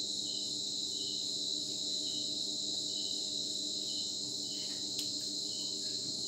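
Crickets chirping steadily: a continuous high trill with shorter chirps repeating at a regular beat. A single sharp click sounds about five seconds in.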